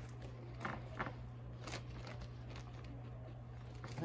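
A few soft knocks and taps in the first two seconds as a cradled wooden painting board is handled on a cake spinner, over a steady low hum.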